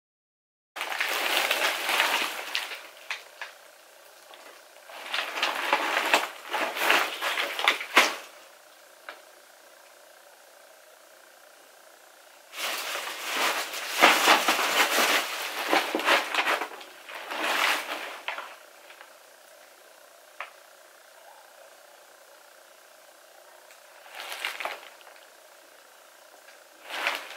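Full white plastic drawstring trash bags crinkling and rustling as they are lifted and shifted about. The sound starts about a second in and comes in several bursts of a few seconds each, with quiet between.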